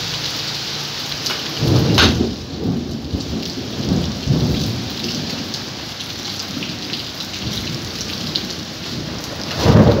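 Steady rain falling, with thunder rumbling in about a second and a half in and rolling on for a few seconds. A second, louder rumble comes right at the end.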